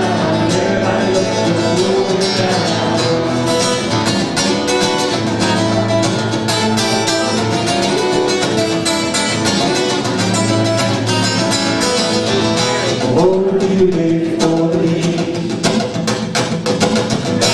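Live folk-song singing accompanied by a strummed acoustic guitar, a sing-along from a songbook.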